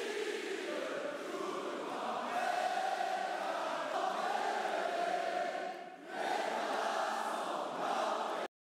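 Large crowd chanting in unison, many voices with long held notes; it dips briefly about six seconds in and resumes.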